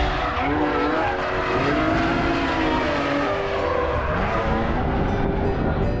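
Racing car engines revving on the circuit, their pitch rising and falling as the cars pass.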